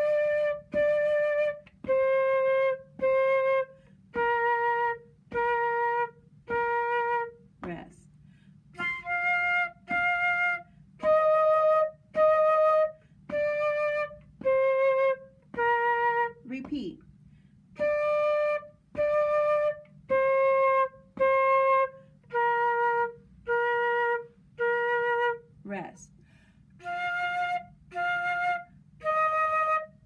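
Concert flute playing a simple beginner melody in detached quarter notes, about one note a second: D, D, C, C, B-flat, B-flat, B-flat, rest, F, F, E-flat, E-flat, D, C, B-flat, played through repeatedly. Quick breaths are heard between phrases.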